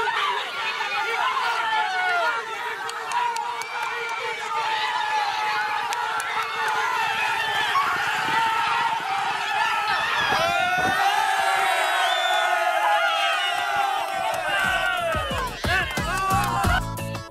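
Crowd of racegoers shouting and cheering, many voices overlapping, as horses race to the finish line.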